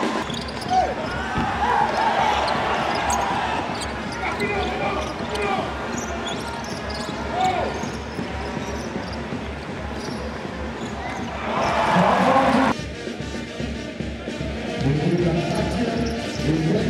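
Basketball game sound, with a voice, arena noise and a ball bouncing, over music with a steady low beat. The game sound changes abruptly about three-quarters of the way through.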